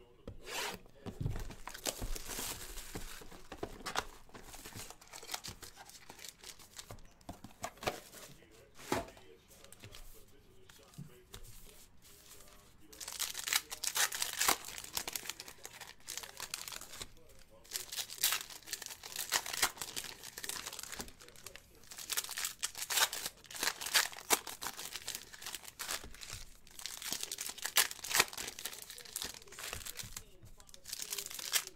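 Foil baseball-card packs being torn open by hand, with the wrappers crinkling in irregular bursts. It gets busier and louder about halfway through.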